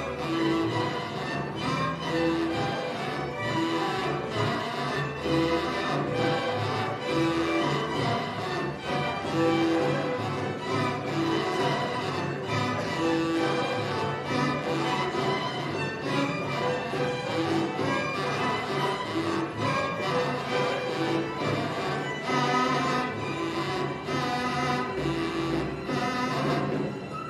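A string orchestra of violins, cello and double bass playing traditional Tarija music live, with a short note returning about once a second, joined by a caja drum and an erkencho, a cow-horn folk trumpet.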